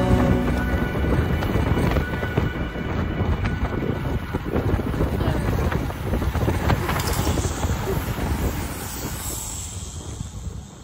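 Wind buffeting the microphone of a camera on a moving road bicycle, with road and tyre rumble and scattered small clicks and knocks. The noise fades away near the end.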